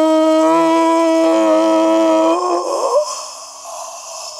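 A man's long celebratory goal shout held on one steady note, breaking off about two and a half seconds in and trailing away in a fading rush of breath.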